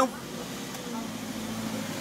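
Car engine and road noise heard from inside the cabin as the car pulls away from a toll booth, a steady low hum.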